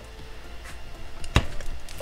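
Handling of model-kit parts with one sharp click about one and a half seconds in, as the figure's arm is pressed into place on the body.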